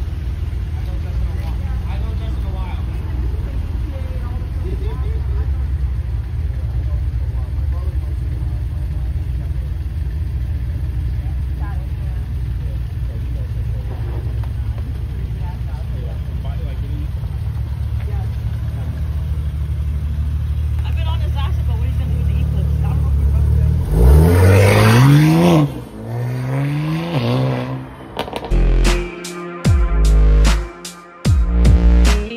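BMW G80 M3's twin-turbo inline-six idling with a steady low drone. Near the end come two rev blips: the first loud, rising and falling, then a shorter one.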